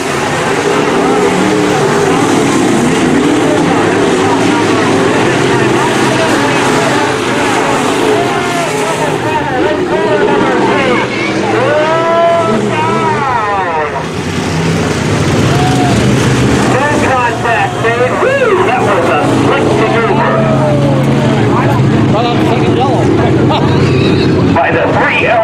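A pack of dirt-track sport modified race cars running at race speed, many engines overlapping, their pitch rising and falling again and again as the cars lift and get back on the throttle through the turns and pass by.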